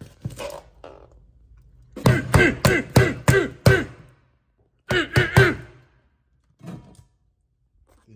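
A man laughing: a run of about six loud 'ha' pulses, each falling in pitch, starting about two seconds in, then a shorter second burst of laughter a second later.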